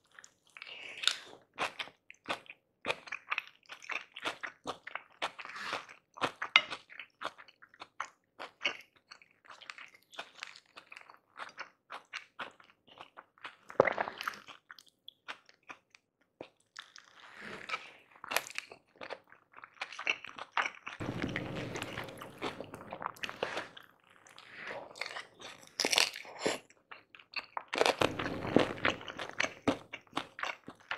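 Close-miked chewing of tahu gimbal: fried tofu and bean sprouts with crisp crackers, giving many short sharp crunches. There are two denser, louder stretches of chewing, about two-thirds of the way in and near the end.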